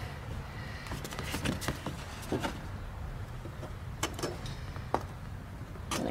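Scissors cutting a hole in a cardboard template: a few scattered snips and crackles of card, with a faint steady low rumble underneath.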